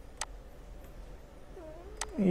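A single computer mouse click, then near the end a faint, short pitched sound that dips and rises.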